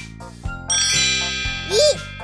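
A bright chime sound effect rings out about two-thirds of a second in and rings on, over children's background music with a steady beat.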